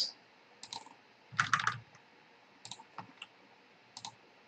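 A few scattered clicks of a computer keyboard and mouse, the loudest a quick cluster about a second and a half in.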